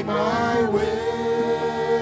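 Live worship music: several voices singing together with a band, holding one long note through most of the stretch.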